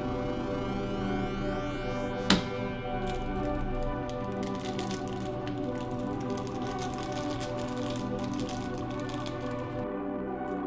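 Background music throughout. About two seconds in comes one sharp snap, the loudest sound, from a spring-loaded desoldering pump (solder sucker) firing on a solder joint. After it come faint scattered clicks from handling parts on the circuit board.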